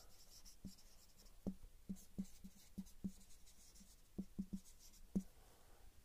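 Marker pen writing on a whiteboard: a faint, irregular run of short strokes as letters are drawn.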